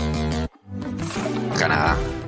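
Background music with held chords cuts off abruptly about half a second in; after a brief gap a new segment starts with music and a loud, rough sound near the end.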